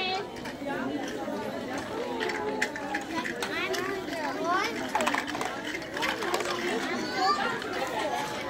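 Overlapping chatter of children and adults, many voices at once with none standing out, and a few light knocks among it.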